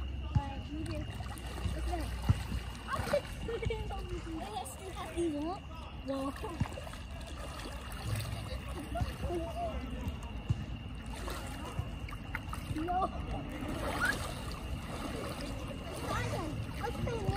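Pool water sloshing and splashing as children wade and swim, under a child's voice calling "Marco" again and again.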